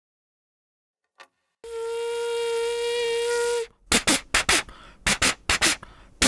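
Cartoon train sound effects: one steady train whistle lasting about two seconds, then a run of short rhythmic chugging bursts.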